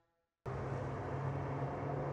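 A brief silence, then about half a second in the sound of racing trucks on a wet track cuts in suddenly: a steady engine drone under a hiss of spray.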